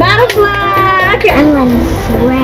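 A child's high voice over background music with a steady low bass.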